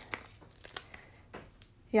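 Cardstock being handled: a few brief, faint paper rustles and crinkles, the loudest grouped around the middle.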